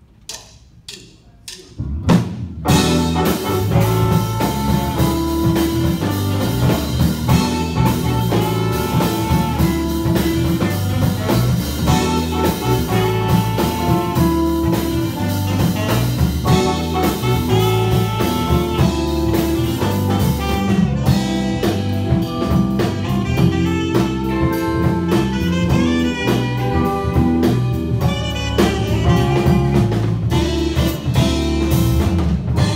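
A funk band of alto saxophone, electric guitars, keyboard, electric bass and drum kit playing live, loud and dense, after four count-in clicks in the first two seconds.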